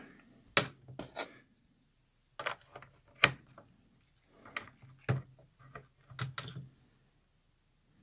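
Small plastic clicks and taps as a 4S LiPo battery's power and balance plugs are pushed into the ports of a parallel charging board, about a dozen sharp, uneven clicks, stopping shortly before the end.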